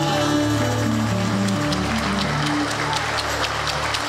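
A choir and live band perform a slow worship song, with held chords over a bass line. A light, even percussion tick comes in about halfway through.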